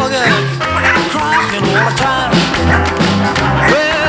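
Rock-and-roll music with singing, playing steadily with a regular beat.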